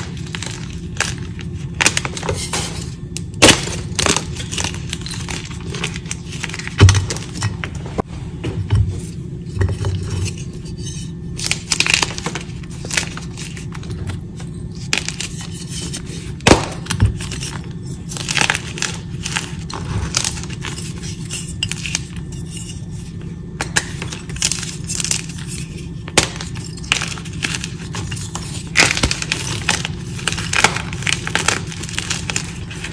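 Blocks of gym chalk snapped and crushed by hand: a continuous run of cracks and crumbling crunches, with a few loud sharp snaps as blocks break. Near the end, broken chunks are crumbled between the fingers.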